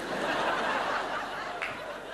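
Studio audience laughing, a dense, even crowd sound with little clapping left in it.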